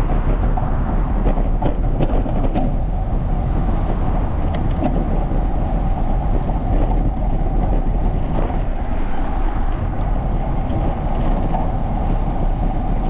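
Steady rushing and rumbling noise of riding a bicycle: wind on the microphone of the bike-mounted camera and tyres rolling on a paved path. A few light knocks come in the first five seconds.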